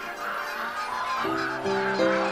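A large flock of snow geese calling all at once, a dense clamour of many overlapping honks, with sustained music chords coming in underneath about a second in.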